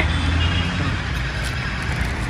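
Steady low rumble of outdoor background noise, with a fainter even hiss above it.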